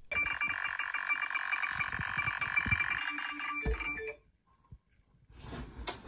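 A chord of several steady high tones held for about four seconds, then cutting off suddenly. About a second of silence follows before other sound starts near the end.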